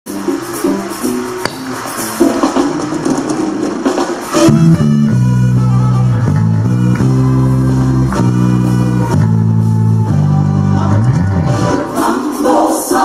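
Six-string electric bass played along with a recorded gospel song. Busy drums and cymbals fill the first four seconds or so, then long held bass notes step from pitch to pitch, with a quick sliding note near the end.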